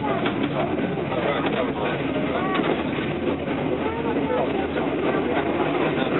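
Steady running noise of a passenger train heard from inside the moving coach, with passengers' voices talking faintly over it.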